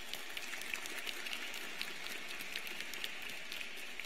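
Audience applauding steadily, a dense patter of clapping hands in a large hall.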